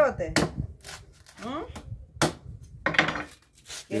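Dry corn husks being torn off a fresh ear of corn by hand: several short, sharp crackling rips.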